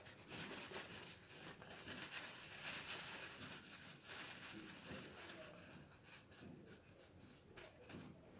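Faint rustling of a paper towel rubbing excess grease off a small sealed ball bearing, dying away after about five seconds.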